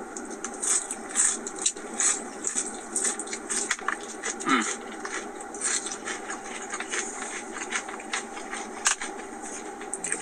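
Someone eating from a takeout bowl: a fork clicking and scraping in the food container, with small crackling eating noises, over a steady low hum.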